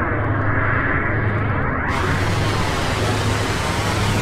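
Logo-intro sound effect: a steady rushing noise over a deep rumble, its tone sweeping like a jet flyover. The hiss turns brighter about halfway through.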